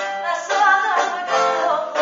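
A woman singing with bouzouki accompaniment, the strings plucked and strummed under her voice.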